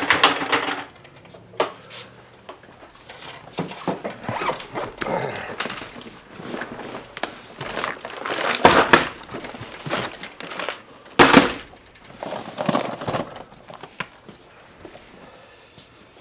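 Handling noise from plastic tackle trays, fishing lures and a soft tackle bag being moved around: scattered clicks, knocks and rustling, with two louder noises about nine and eleven seconds in.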